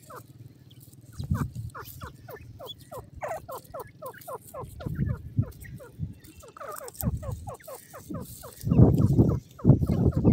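Francolin (teetar) chicks peeping: a steady run of short, thin calls that fall in pitch, about three a second. Low muffled rumbles come and go under them, the loudest a little before the end.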